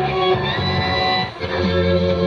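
Guitar music playing from a 1961 Admiral stereophonic console radio tuned to an FM station, with a change in the music about halfway through.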